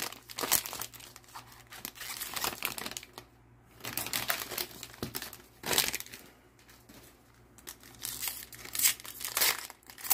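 Foil baseball-card pack wrappers crinkling and crackling as they are handled, in bursts with quieter spells between.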